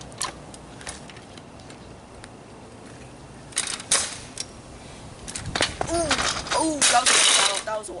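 Kick scooter on asphalt: a rush of wheel noise about halfway through, then sharp knocks and a loud clattering scrape near the end as the rider wipes out. Short yells come with it.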